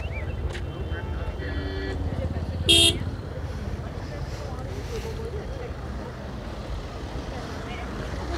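A steady low rumble of cars moving slowly through a dirt car park, with faint distant voices. A single short, loud car-horn toot sounds about three seconds in.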